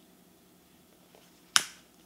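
Quiet room tone broken by a single sharp click about one and a half seconds in.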